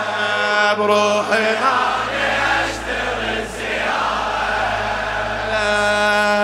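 A male reciter and a crowd of men chanting a Shia latmiyya refrain together in long held notes, over a steady low hum.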